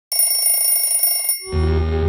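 Electronic alarm ringing: a rapid, high-pitched trill that cuts off suddenly just over a second in. About a second and a half in, a low, steady bass drone of music starts.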